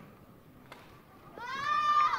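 A single sharp tap of a shuttlecock or shoe on the court, then a young girl's loud, high-pitched shout that rises and falls over about half a second. It is a player yelling as a badminton rally ends.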